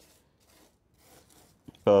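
Faint rustling and scraping of a hand handling the soil and trunk base of a small potted ficus in a terracotta pot, a couple of soft scrapes, with a spoken word at the very end.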